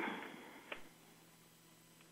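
A pause in speech: faint studio room tone. The last spoken word fades out at the start, and there is one faint short click a little under a second in.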